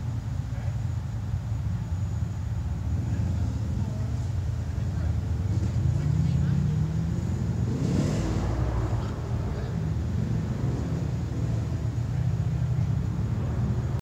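Side-by-side UTV engine running low and steady under load as it crawls over a rocky ledge, revving up from about six to eight seconds in before settling back.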